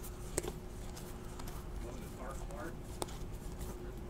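Quiet handling of a stack of baseball trading cards, the cards slid off one at a time with a couple of light clicks, over a low steady hum.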